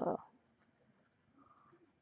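Faint scratching of a pen stylus on a graphics tablet, in a series of short separate strokes as rough sketch lines are drawn.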